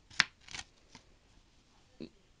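A CD and its cardboard packaging being handled: one sharp click about a fifth of a second in, then a couple of softer rustles.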